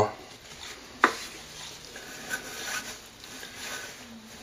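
Cloth rustling as a sword is slid and unwrapped from a black fabric sleeve, with one sharp tap about a second in.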